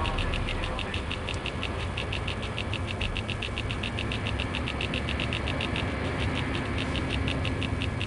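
Intro sound bed: a steady low hum with a fast, even ticking pulse, about six ticks a second.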